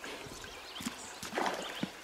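Rubber-booted footsteps on wet stones in a shallow rocky river: a few scattered knocks and scuffs, the loudest about one and a half seconds in.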